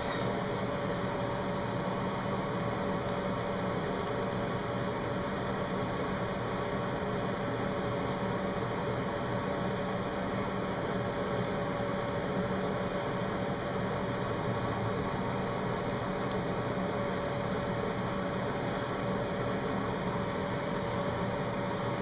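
Steady machine hum and hiss, unchanging throughout, with a faint constant tone in it, like a fan or air-conditioning unit running in a small room.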